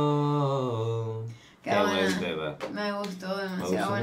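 The song's closing vocal, a single held sung note with no beat behind it, sliding slightly down in pitch and fading out about a second and a half in. A voice then talks in short phrases.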